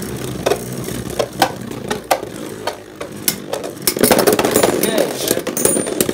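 Two Beyblade Burst spinning tops whirring in a clear plastic BeyStadium, with repeated sharp clicks at irregular intervals as they strike each other and the stadium wall.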